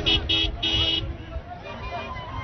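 A vehicle horn honking in short toots, three in quick succession with the last held a little longer, over the hubbub of a large crowd.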